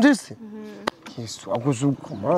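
A man talking in a close, conversational voice, with a short click a little under a second in.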